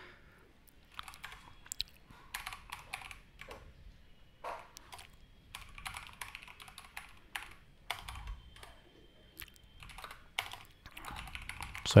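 Typing on a computer keyboard: irregular runs of keystrokes with short pauses, entering a terminal command.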